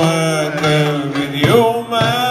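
Male cantor singing a long, ornamented Middle Eastern melodic line, bending and sliding held notes, accompanied by oud and hand drum.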